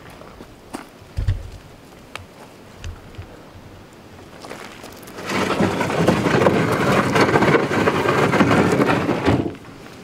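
A small A-frame chicken coop being moved over bare dirt: a couple of low thumps, then a loud, grainy scraping for about four seconds starting about five seconds in.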